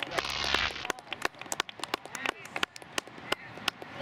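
Scattered handclaps from a few spectators: sharp, irregular claps, with a brief burst of distant voices in the first second.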